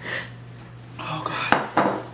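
A drinking glass set down on a hard kitchen counter with a sharp clink about one and a half seconds in, among breathy gasps from someone catching her breath after gulping milk to cool a burnt mouth.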